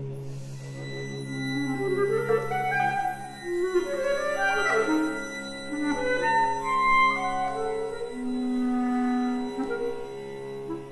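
Contemporary chamber music for flute, clarinet, violin and cello: overlapping held notes over a long low note underneath, with the clarinet and flute lines stepping between pitches.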